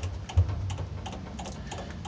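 A milling-machine rotary table being cranked by its handwheel, its 90:1 worm drive turning the table slowly. The cranking gives a run of light, irregular clicks, with a sharper knock about half a second in, over a low hum.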